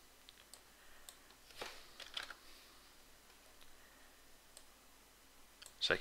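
Faint, scattered clicks of a computer mouse, with a few louder ones about two seconds in.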